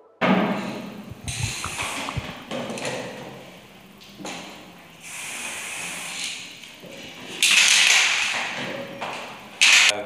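Aerosol spray-paint can hissing in short bursts, about six sprays of a fraction of a second to over a second each, the loudest near the end. A low thud comes right at the start.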